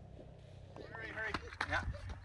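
People talking indistinctly, starting about a second in, after a low steady rumble.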